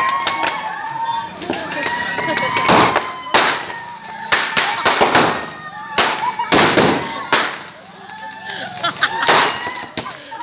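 Firecrackers packed inside a burning Ravan effigy going off in sharp, irregular bangs, a dozen or so over several seconds, with people's voices shouting underneath.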